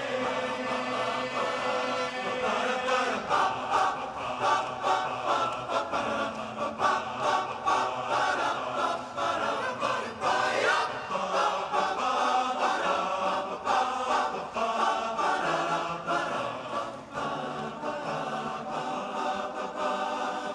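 Large male barbershop chorus singing a cappella in close harmony, a rhythmic passage of short accented chords.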